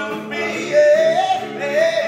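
Male a cappella group singing in close harmony, a higher lead voice stepping upward in pitch over held chords about halfway through.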